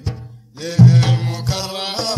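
Sudanese madeeh: a men's group singing a devotional chant over hand-beaten frame drums (tar). There is a short lull just after the start, then a heavy drum stroke about a second in as the voices come back in.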